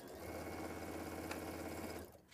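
Domestic electric sewing machine stitching a seam through pieced quilt fabric. It runs steadily, starting just after the beginning and stopping near the end.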